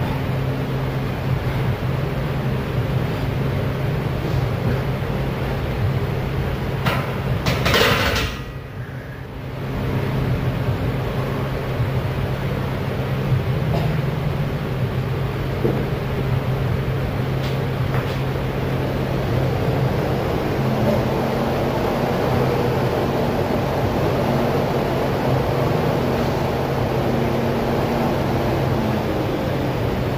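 A steady low hum under even background noise, with a brief louder rush of noise about seven seconds in, followed by a short dip in level.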